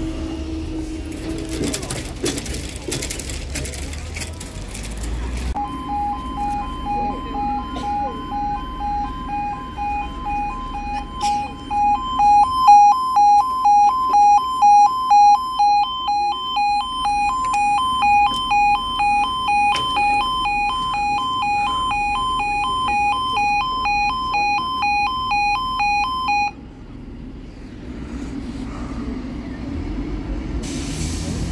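Level crossing audible warning alarm: a pulsing two-tone alarm that starts about five seconds in and cuts off suddenly near the end, sounding while the skirted barriers swing down for an approaching train.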